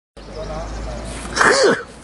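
A short, loud shouted exclamation, breathy and sharp, about one and a half seconds in, over faint background voices.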